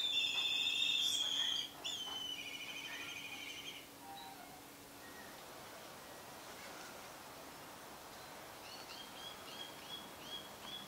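Hawks calling: two long wavering whistles in the first four seconds, the second falling in pitch, then a run of short rising chirps, about two a second, near the end.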